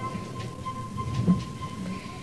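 A quiet moment in a 1960s live opera recording: a single held high note sustained over tape hiss and low stage and audience noise, with a dull thump about a second in.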